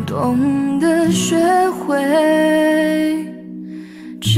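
A Chinese pop ballad recording playing: a melodic line holds a long note, then the music dies away near the end as the song finishes.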